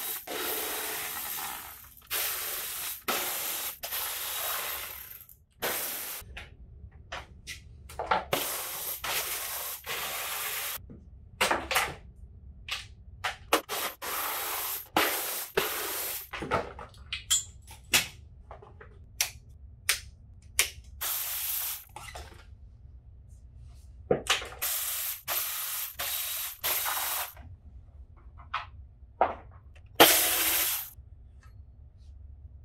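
Plastic bodywork of a dirt bike being unbolted and pulled off: repeated scraping and rubbing bursts a second or two long, with short clicks and knocks between them.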